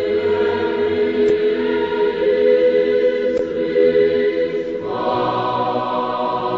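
Choral music: voices holding long, sustained chords, moving to a new chord near the end.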